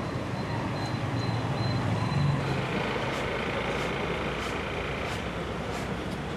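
Street ambience: a steady wash of traffic noise with a low engine hum that swells briefly about two seconds in.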